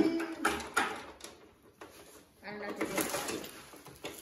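Mostly a person's voice: a short word at the start, then low talk from about two and a half seconds in, with a few faint clicks in the quiet stretch between.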